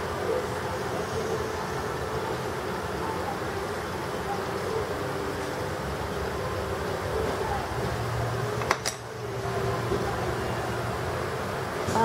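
Steady room background noise with a fan-like hum and faint voices in the background, broken by a single sharp click about nine seconds in.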